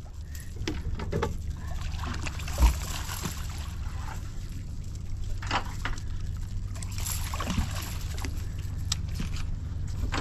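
A hooked catfish splashing and thrashing at the surface beside a boat and being scooped into a landing net, with water sloshing and scattered knocks, over a steady low hum. A sharp thump about two and a half seconds in is the loudest sound.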